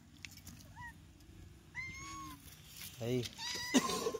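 Short, high-pitched animal calls: a brief rising one, a held one about two seconds in, and several more near the end.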